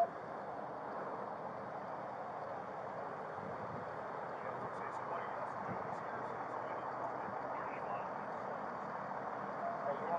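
Steady outdoor background noise at a roadside emergency scene, with faint distant voices under it.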